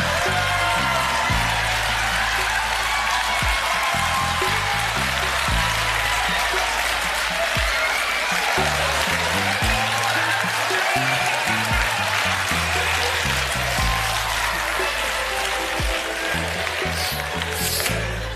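Entrance music with a bass line stepping from note to note, under audience applause. Both ease off slightly near the end.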